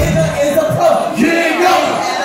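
Crowd and rapper shouting through a loud PA over a hip-hop beat at a live concert. About halfway through, the kick drum and bass drop out, leaving the shouted voices.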